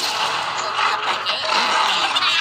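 A sudden loud rushing, crashing noise from a film soundtrack. It comes in abruptly and holds dense and steady, the sound of a violent disaster scene at a waterfall.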